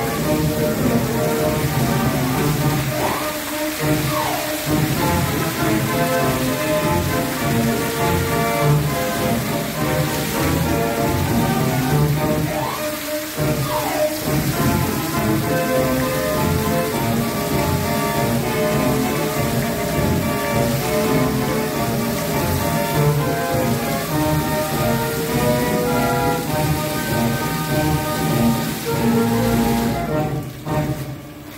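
Fountain jets spraying and splashing down in a steady hiss, with music playing along with the show; twice a swooping tone in the music rises and falls.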